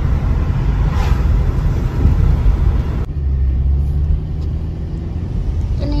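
Road noise inside a moving car: a steady low rumble of engine and tyres. About halfway through, the higher hiss drops away abruptly and a low hum carries on.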